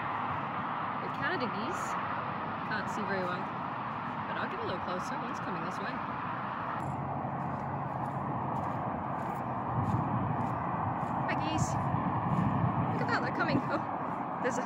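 Outdoor lakeside ambience: a steady background rush with scattered short bird calls, including a brief warbling call about eleven seconds in.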